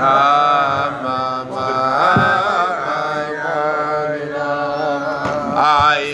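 Men's voices singing a slow, wordless Chassidic melody (a niggun), with long held notes that waver in pitch.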